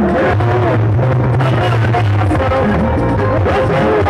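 Loud live band music: an electronic keyboard playing over a sustained bass line, with a Yoruba talking drum struck with a curved stick.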